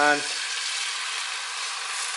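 Liquid egg whites poured from a bottle into a hot non-stick frying pan, sizzling steadily as they hit the pan.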